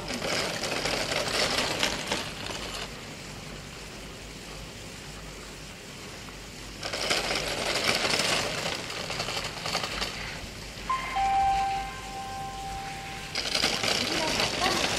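Ski edges scraping across hard-packed snow in three spells of hiss as a giant-slalom racer carves through turns. Between the second and third spells, a steady two-note tone sounds, a higher note then a lower one, for about two seconds.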